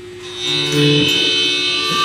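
Steady amplifier hum, then about half a second in a live band comes in with a sustained chord of held notes that makes it much louder, the start of a song.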